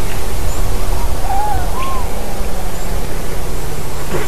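Steady loud hiss with a low rumble, and two short whistled bird calls about a second and a half in, each rising and then falling in pitch.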